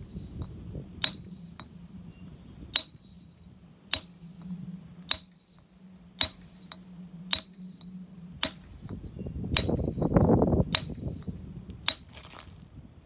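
Hand hammer striking a steel chisel held on a granite slab: a ringing clink about once a second, around ten strikes. A low rumble swells briefly near the end.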